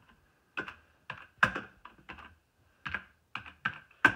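Computer keyboard being typed on: about a dozen quick, irregularly spaced key clicks as a short name is keyed in.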